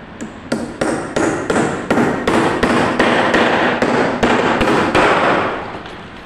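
Hammer blows on timber: a dozen or so sharp strikes, about three a second, as a wooden brace is knocked tight at the foot of plywood column formwork.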